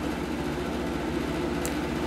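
A multimeter's continuity tester sounding a steady, low-pitched tone while its probes bridge a 3 A fuse on an LCD TV inverter board: the fuse is intact.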